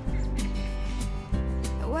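Background song: soft music with sustained notes, the singer's voice coming back in near the end.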